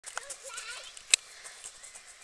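High-pitched voices of people talking near the microphone, with one sharp click about a second in.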